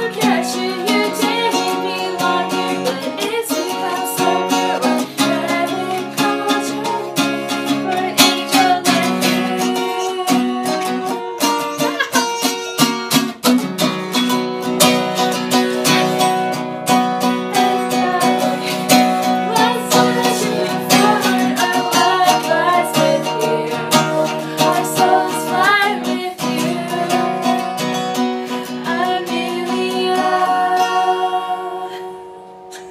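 Small-bodied steel-string acoustic guitar strummed in a steady rhythm, loud against two women's voices singing along.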